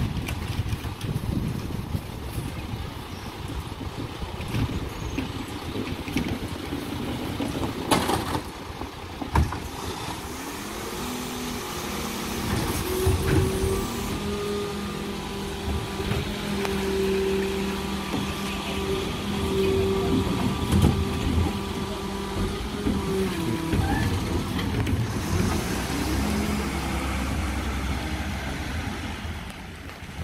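Mercedes Econic refuse truck with a Geesink Norba body: its diesel runs, and a couple of sharp knocks come from a wheelie bin meeting the Terberg bin lifter. Then the engine and hydraulics rise to a steady whine for about twelve seconds while the lifter tips the bin, and drop back down. A low rumble follows near the end.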